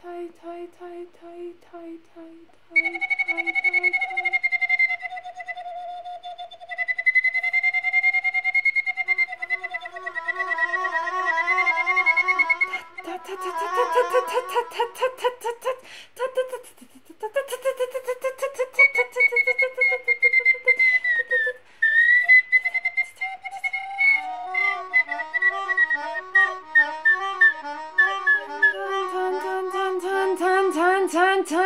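Improvised trio of slide whistle, melodica and a woman's voice. They play held and wavering notes and quick pulsing figures, and some whistle notes glide up and down in pitch. The sound breaks off briefly about sixteen seconds in.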